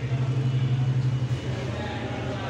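A steady low hum, with faint voices in the background.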